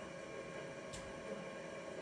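Profisher E 12 V electric net hauler's motor running with a steady hum, with a single faint click about a second in.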